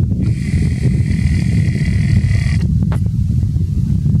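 Wind buffeting the microphone: a loud, uneven low rumble, with a high hiss that stops about two and a half seconds in and a few faint clicks just after.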